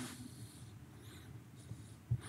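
A quiet pause in a talk: faint room tone, with a faint brief sound about a second in.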